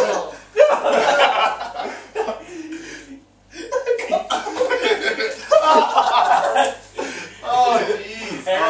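A group of young men laughing and chuckling, with voices calling out, and a brief lull about three seconds in.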